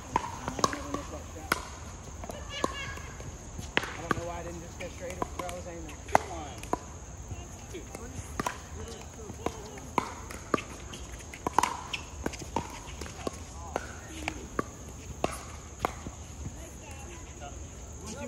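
Pickleball paddles striking a hollow plastic ball in doubles rallies, with the ball bouncing on the hard court: a string of sharp pops at irregular spacing, about one a second, some coming from games on neighbouring courts.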